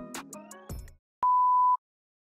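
Background music with a beat, dying away about a second in, then a single steady high beep about half a second long, cut off cleanly: an edited-in beep sound effect.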